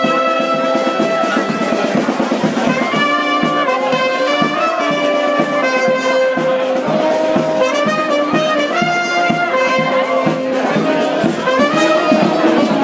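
A small street band playing a tune: trumpet and a larger brass horn carry the melody in held notes over a steady beat on a bass drum.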